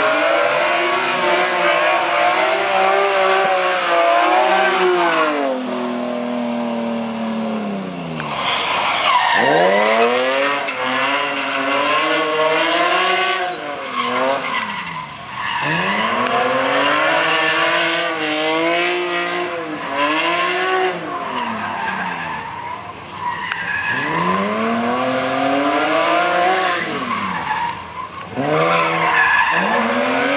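Ford Sierra Cosworth drift car's engine revving hard while its tyres squeal through long slides. The engine pitch climbs and drops back about five or six times as the throttle is worked and gears change.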